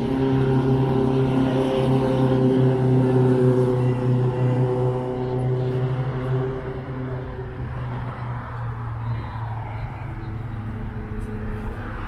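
An engine or motor running with a steady low hum of constant pitch. It is loudest in the first half and fades after about six seconds.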